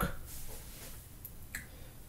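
Quiet room with one faint short click about one and a half seconds in.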